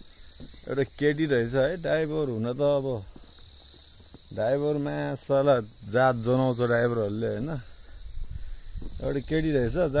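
Steady high-pitched insect chorus that never lets up, under a man talking in three stretches.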